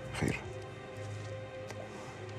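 Quiet background music: low, steady held tones that sustain without a beat.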